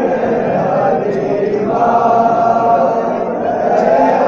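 Men's voices chanting a noha, a Shia mourning lament, together in a sustained melodic line that swells about two seconds in.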